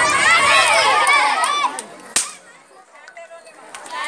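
Several children's voices calling out over one another for about a second and a half, then a single sharp crack about two seconds in.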